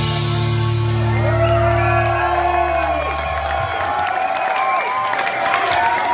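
A live band's final chord ringing out and fading away over the first three and a half seconds, while the crowd cheers, whoops and whistles at the song's end.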